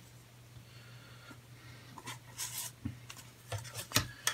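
Hard plastic snap-together model-kit parts being handled and fitted. It is faint at first, then a brief rustle and a few light plastic clicks in the second half, the last one sharper, over a low steady hum.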